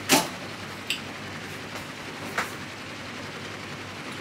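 Cookware on a gas stovetop knocking and clinking: a sharp knock at the start, a clink about a second in and another a little past halfway, over a steady hiss.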